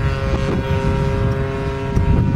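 Converted Homelite 30cc two-stroke trimmer engine, fitted with a bigger Walbro carburetor and a Pitts-style muffler, driving a giant-scale RC plane in flight and holding one steady pitch as a continuous drone.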